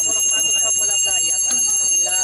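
Many voices singing and calling together over a high ringing bell that keeps up steadily.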